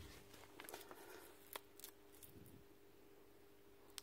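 Near silence, with a few faint clicks in the first two seconds as a cordless impact wrench's plastic housing is handled and turned over.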